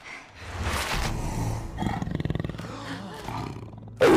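Animated snow leopard character's growl from a film soundtrack: a long, rough, rattling growl that fades near the end.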